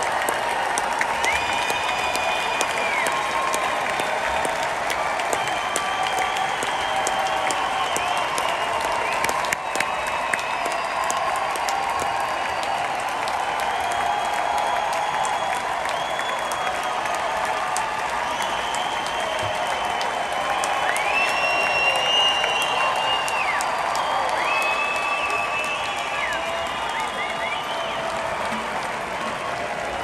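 A large arena crowd applauding and cheering, with several long, high whistles cutting through the clapping.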